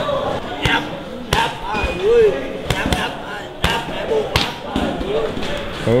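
Sharp, irregular strikes of gloves and kicks landing on pads and heavy bags, coming every half second to a second, with short voiced calls between them.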